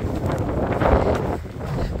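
Wind buffeting the microphone: a steady, deep rumble with a rushing hiss over it.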